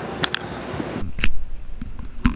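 Camera handling noise: two quick clicks, then a sudden change in the background as the recording switches to an action camera, followed by a loud thump and a low rumble with scattered knocks.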